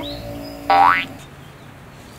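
A cartoon sound effect: one short, loud tone sliding sharply upward like a slide whistle, starting abruptly about two-thirds of a second in and stopping within a third of a second.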